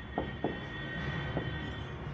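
Whiteboard marker drawing a circuit diagram: a few short taps of the tip on the board and a steady high squeak as a line is drawn, the squeak stopping near the end.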